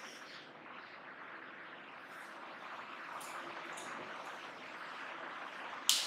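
Faint steady room noise with a few short, light strokes of a marker on a whiteboard, and a sharp click near the end.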